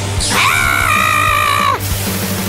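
A cartoon woman's high-pitched scream. It starts about a quarter second in with a sharp downward sweep, holds one shrill pitch, and cuts off suddenly after about a second and a half. Background music plays throughout.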